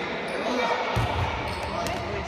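A football kicked once about a second in: a single dull thud on a wooden sports-hall floor, echoing in the large hall, over a background of children's voices.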